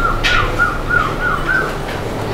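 Milking parlour machinery running with a steady low hum, and a quick run of five identical warbling chirps, about three a second, in the first second and a half. Two sharp hissing clicks cut through, one early and one near the end.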